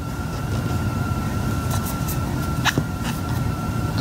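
Steady low background hum with a faint steady whine above it. A few faint clicks and one short chirp come about two-thirds of the way in.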